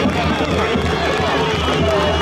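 A large crowd cheering and shouting, many voices overlapping, with music playing underneath.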